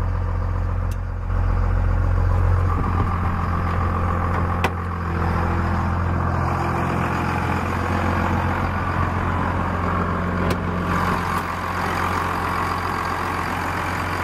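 A Cummins 5.9-litre inline-six turbodiesel in a 1999 Dodge Ram 2500, idling steadily. It sounds low and muffled from inside the cab for the first few seconds, then fuller and clearer from outside by the front of the truck.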